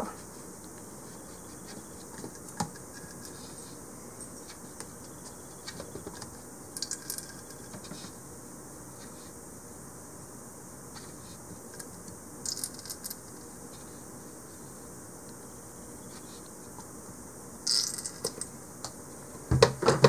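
Quiet kitchen handling: a metal measuring spoon clinks lightly against a plastic food processor bowl and an oil bottle now and then, a few small clicks every few seconds, as olive oil is measured out by the tablespoon. A steady low room hiss lies under it.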